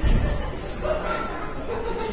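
Station public-address announcement for the last train, a voice over the murmur of a waiting crowd on the underground platform, with a low thump at the very start.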